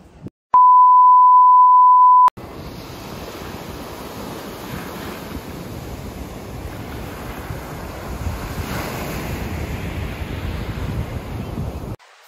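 A loud, steady single-pitch electronic beep lasting nearly two seconds, cutting off abruptly, followed by Atlantic surf breaking and washing over a pebble beach, with some wind on the microphone.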